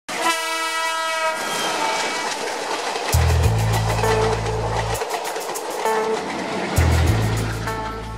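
A train horn blares for about a second at the start, followed by the running noise of a passing train with a rhythmic clickety-clack. Deep bass notes from a music bed come in about three seconds in and again near the end.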